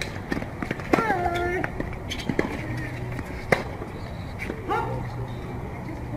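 Tennis rally: tennis balls struck by racquets, with sharp hits about every second and a quarter, and a player's falling grunt on the shot about a second in and again near five seconds.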